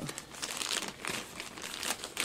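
Thin plastic bag of dried bergamot crinkling as it is handled, an irregular run of crackles.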